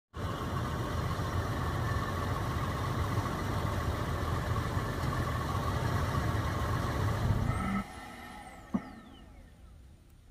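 Toyota FJ Cruiser's engine running steadily, then cutting off abruptly about eight seconds in, followed by a faint falling whine and a single click.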